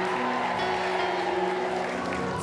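Soft background music of steady, held chords with no voice over it.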